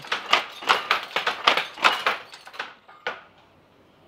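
Powerloom running, a regular clacking of just under three strokes a second that stops about two-thirds of the way in, with one more click just after.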